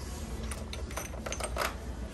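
A quick run of small clicks and clinks, loudest near the end, over a low rumble: hard items rattling and knocking in a plastic shopping cart as it is pushed along.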